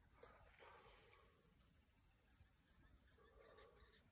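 Near silence, with only a faint outdoor background.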